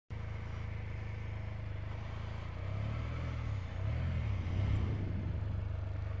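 Can-Am Spyder three-wheeled motorcycle engine running at idle. From about two and a half seconds in, its pitch rises and falls a few times and it gets a little louder.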